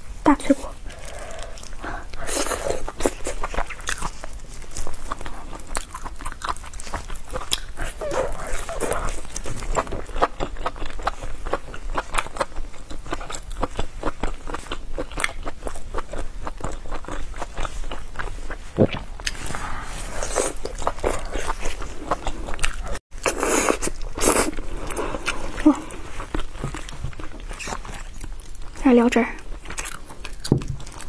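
Close-miked eating sounds: biting and chewing braised meat on the bone, crunching through cartilage, with many small wet mouth clicks. There is a brief break in the sound a little after 23 seconds.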